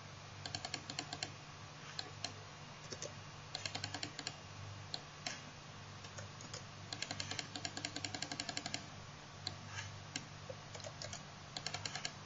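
Faint clicking of a computer keyboard and mouse: single clicks and quick runs of about ten clicks a second, over a steady low hum.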